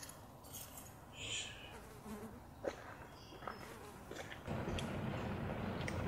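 Faint quiet ambience with scattered small clicks and a few brief high buzzes. About four and a half seconds in, the steady low rumble of a car's interior starts abruptly.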